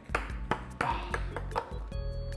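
A ping pong ball bouncing on a wooden tabletop: several light, sharp clicks at uneven intervals, over background music.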